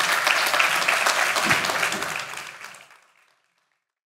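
An audience applauding, a dense patter of many hands clapping that fades out about three seconds in.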